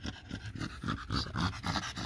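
An American Bully dog panting rapidly with its mouth open, several short breaths a second.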